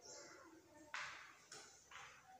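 Near silence, broken by a few faint, short scrapes: one sharper scrape about a second in and weaker ones near the end, from chalk against a classroom blackboard.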